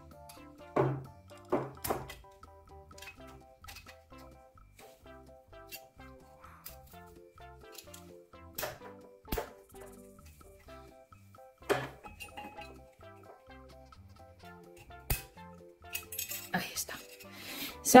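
Sharp metallic clicks and scrapes, a dozen or so spread unevenly, as a thin flat screwdriver pries at the spring retaining clip on a door lever handle's spindle, working the stubborn clip loose. Quiet background music plays under it.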